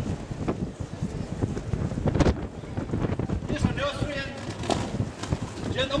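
Indistinct voices of an outdoor crowd, clearer in the second half, over a steady low rumble of wind on the microphone, with one sharp click about two seconds in.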